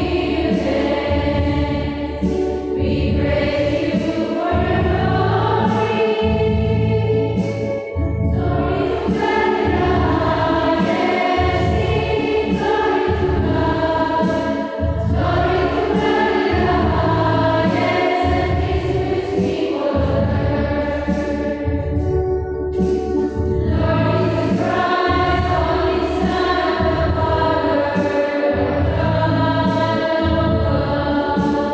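A choir singing a hymn in chorus over instrumental accompaniment, phrase after phrase with brief breaths between.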